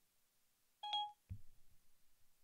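Siri voice assistant's electronic chime: one short beep about a second in, answering a spoken question with a tone and no reply. A faint low thump follows just after.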